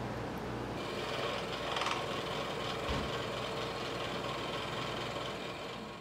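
Small scroll-sawn wood piece rubbed back and forth by hand on sandpaper, a steady scratchy rasping as the fuzz is sanded off its underside, over a low steady hum.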